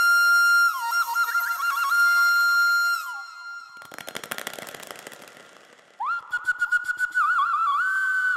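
Flute melody of long held notes with quick ornamental pitch bends, breaking off about three seconds in. A rapid rattling noise follows for about two seconds and fades, then the flute comes back in near the end.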